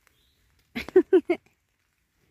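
A short burst of a woman's laughter: four quick pulses about a second in.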